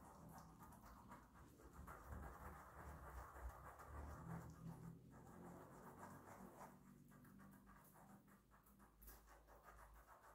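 Faint, soft rubbing of a small facial sponge working exfoliating gel over wet skin, barely above room tone.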